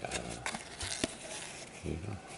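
Soft rustling and a few light clicks of cord being handled and pulled through a Turk's head knot, with a short low vocal sound near the end.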